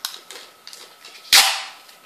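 Clear packing tape pulled sharply off the roll: one short, loud rip about a second and a half in that trails off over about half a second. A few light clicks and rustles of handling come before it.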